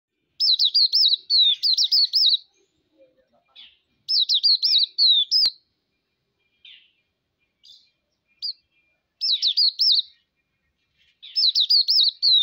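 Hume's white-eye (Zosterops auriventer) singing: four bursts of quick, high notes that swing up and down, each about one to two seconds long, with a few short chirps in the pauses between.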